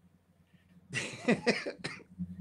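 A short quiet, then about halfway through a burst of laughter in several breathy pulses.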